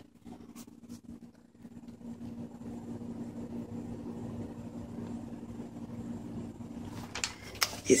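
A steady low background hum, growing slightly louder about two seconds in.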